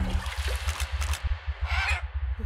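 End-card sound effect: a held synth tone cuts off just after the start, giving way to a hissing, watery whoosh over a low rumbling pulse, with a second short hiss near the end.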